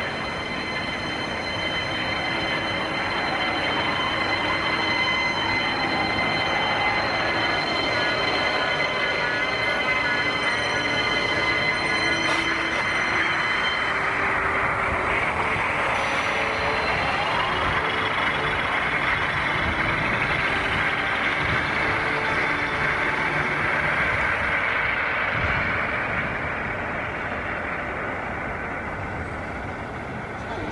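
Anime soundtrack effect: a dense, sustained rushing hum with steady high ringing tones, which drop out about halfway through while a slow rising glide sweeps up. It fades over the last few seconds.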